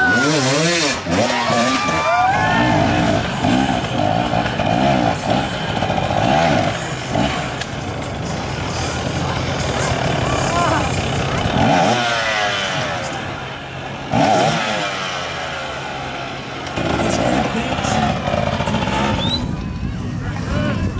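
Off-road dirt bike engines revving up and down in repeated bursts as the riders work over obstacles, with people's voices in the background.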